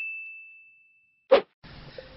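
An editing sound effect: a single high, pure ding that fades away over about a second and a half, then a short, sharp pop a little later, louder than the ding.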